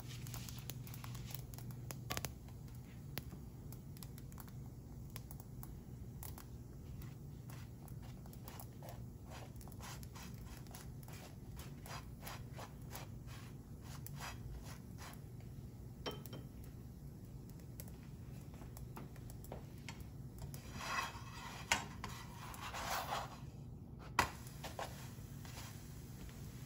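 Flatbread dry-frying in a lightly oiled nonstick frying pan: faint scattered crackles over a low steady hum. Late on, a spatula scrapes the pan as the bread is lifted and flipped, followed by a single sharp knock.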